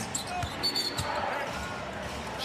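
Basketball bouncing on a hardwood court: two thuds about half a second apart, with a brief high sneaker squeak between them, over faint arena background noise.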